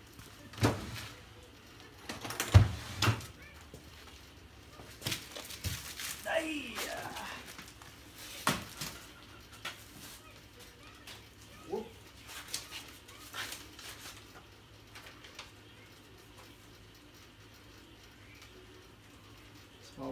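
A cardboard box being handled and opened: scattered knocks and thumps, the sharpest between two and three seconds in, with rustling of packaging and paper that thins out in the second half.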